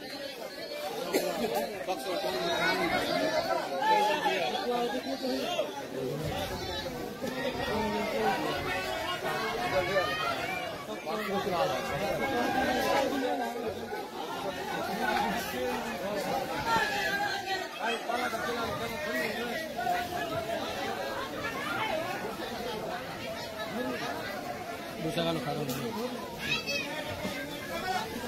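People talking, voices going on throughout, with no other sound standing out.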